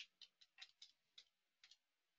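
Faint computer keyboard keystrokes: about eight irregular key clicks as a word is typed and corrected.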